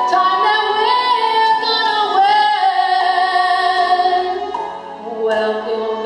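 A woman singing a slow soul ballad into a handheld microphone over musical accompaniment. She holds one long note through the middle, eases off briefly, and starts a new phrase near the end.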